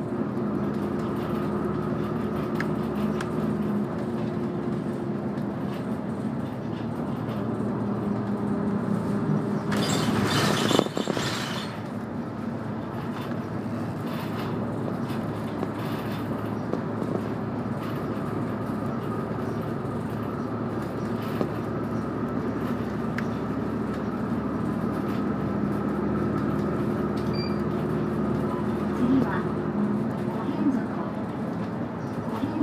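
Inside a moving bus: the engine and drivetrain run with a steady low hum and road noise. About ten seconds in there is a loud hiss lasting a second or so.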